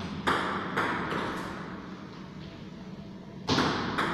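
Celluloid-type table tennis ball being struck by rubber-faced rackets and bouncing on the table during a rally. Four quick, sharp clicks come in the first second and a half, then a louder hit about three and a half seconds in, each ringing on briefly in the room.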